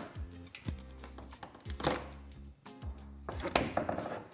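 Background music, with a few knocks as a kettle weight is lifted off a plastic cheese press and the pressed cheese is handled out of its mould; the loudest knocks come about halfway through and near the end.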